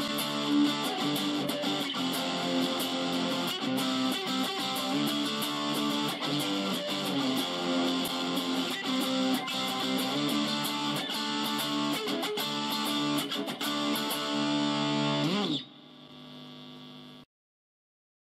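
Electric guitar, a Fender Jazzmaster, played through a Zoom MS-50G's 'Dist 1' distortion patch into a small Roland Micro Cube amp, ringing out dense distorted chords and lines. The playing stops abruptly about 15 seconds in, leaving a faint amp hum for a second or so before the sound cuts out entirely.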